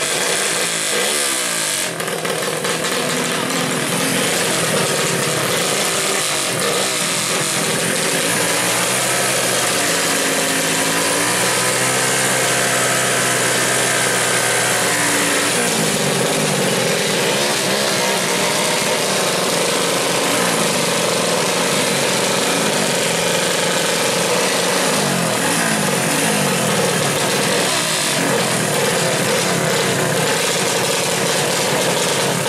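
Small modified four-stroke 120cc underbone motorcycle engines running at the drag-race start line, their pitch rising and falling as the throttles are blipped, with one engine held at a steadier rev for a few seconds in the middle.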